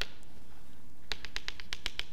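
Chalk tapping against a blackboard: a quick run of about eight sharp taps starting about a second in, as chalk strikes the board in short strokes.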